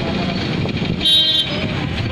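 Street traffic noise with a short vehicle horn toot about a second in.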